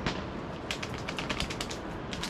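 Paper bag crinkling as it is unfolded and opened by hand: one sharp snap right at the start, then a quick run of crackles through the middle.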